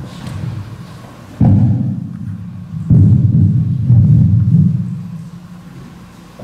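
Two loud, low thuds about a second and a half apart, each followed by a deep rumble that dies away over a second or two.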